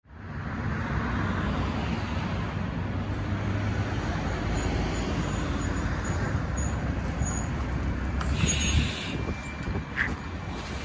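SamTrans 2017 Gillig BRT 40-ft transit bus pulling in to a stop, its engine and road noise a steady low rumble. A short hiss of released air comes from the bus about eight seconds in.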